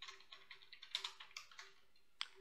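Computer keyboard typing, faint: several short, irregularly spaced keystrokes.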